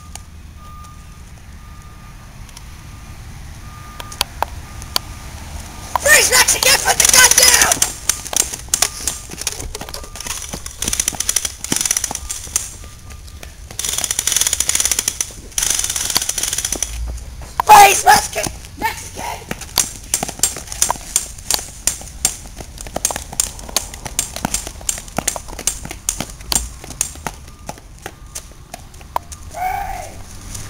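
Loud shouting voices, once about six seconds in and again near eighteen seconds, with many short clicks and knocks in between.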